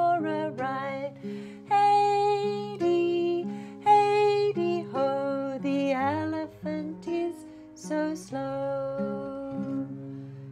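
A woman singing a children's song, accompanying herself on a nylon-string classical guitar; her held sung notes ride over steadily played chords and bass notes.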